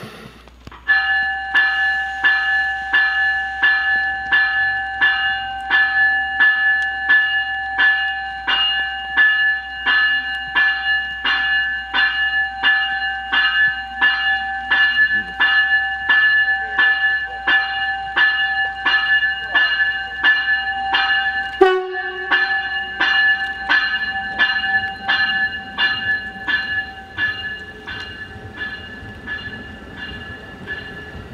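Amtrak Avelia Liberty trainset's bell ringing steadily, about two strikes a second, as the train comes into the station. Its pitch drops slightly as it passes close by, about two-thirds of the way in, and then the ringing goes on more faintly.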